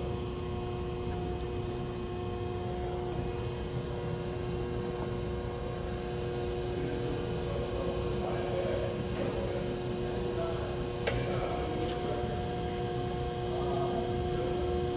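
Steady hum of running industrial machinery from a screen changer test rig, holding a few steady tones over a low rumble. Two sharp clicks come near the end.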